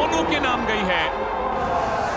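A male TV commentator talks briefly over steady arena crowd noise. Near the end a short rising hiss swells in as the broadcast's replay graphic sweeps onto the screen.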